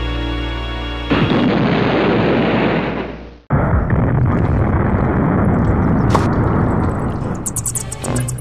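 A firework set off in a cave: a loud, steady rushing blast that starts abruptly about a second in over a fading held chord of music, breaks off sharply midway and starts again, running on until music comes back near the end.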